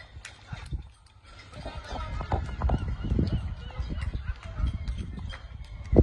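Footsteps on wet tarmac as the person filming walks, over a low rumble of wind and handling on the phone's microphone.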